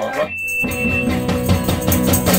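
Live rock band of electric guitars, electric bass and drum kit starting a song just over half a second in. Before it there is a brief high steady tone.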